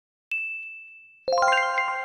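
A single high ding that fades away, then about a second later a quick rising run of chime notes that keep ringing together: sound effects marking the matched silhouette.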